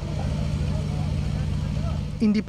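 An engine running steadily: a low drone with a fast, even pulse.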